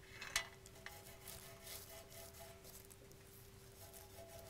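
Faint rubbing and light scratching of fingertips along the carved edge of a painted wooden tray as finger gilt is worked onto it, with a steady faint hum beneath.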